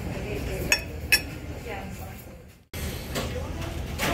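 Tableware clinking twice, two sharp ringing clinks about half a second apart early in the second, over a steady low hum of restaurant room noise. The sound cuts out for an instant about two-thirds of the way through, at an edit.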